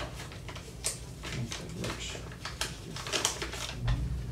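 Silver coins clinking as they are handled and set down on a desk: an irregular run of small, sharp metallic clicks.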